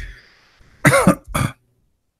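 A man laughs briefly with a breathy exhale, then coughs twice about a second in, the two coughs about half a second apart.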